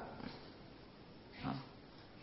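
A pause in a man's spoken talk: faint steady hiss, with one short, soft sound from the speaker's voice or breath about one and a half seconds in.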